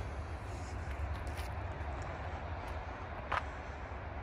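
A steady low outdoor rumble with a single short click about three seconds in.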